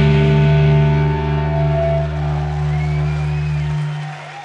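A live rock band's electric guitars and bass holding the final chord of a song and letting it ring out. The low bass note stops just before the end while the rest of the chord fades on.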